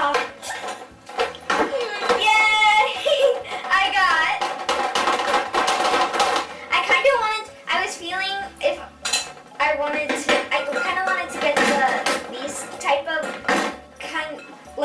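Plastic glue bottles clattering and knocking against glass bowls as they are pulled from a full bowl and set down, many sharp clinks throughout.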